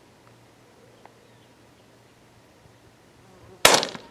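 A single rifle shot near the end, sudden and loud with a short ringing tail, after a few seconds of faint background.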